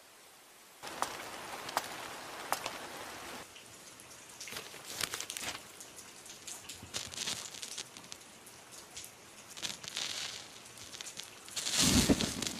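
Soft night ambience from an anime soundtrack: a steady light hiss with scattered ticks and crackles like a patter, starting about a second in.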